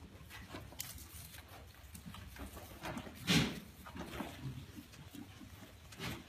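African pygmy goats shifting about in a pen of wood shavings, with faint rustling and small knocks. About halfway through comes one short, louder sound from a goat.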